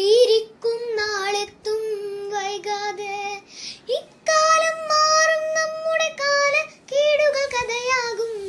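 A young girl singing a Malayalam song unaccompanied, holding long steady notes across several phrases with a short pause for breath about halfway through.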